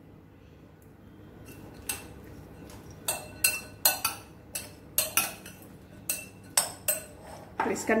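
Metal spoon clinking against a glass bowl while stirring a dry snack mix: a dozen or so irregular clinks, starting about two seconds in.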